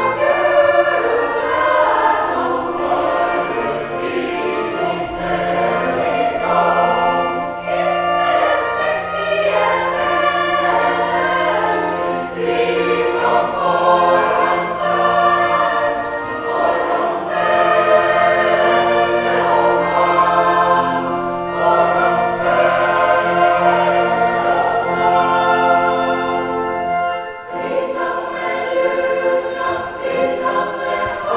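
Choir singing a Christmas motet with organ accompaniment. The organ holds steady bass notes under the voices, and these stop about three seconds before the end.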